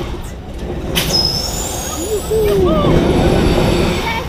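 Tower amusement ride in motion: a loud steady low rumble, with a sharp clack about a second in followed by a thin high whistle that rises briefly.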